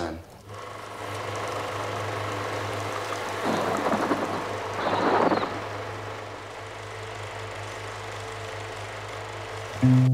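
Reel-to-reel film projector running: a steady low hum with a mechanical whirr, and two swells of rushing noise about three and a half and five seconds in.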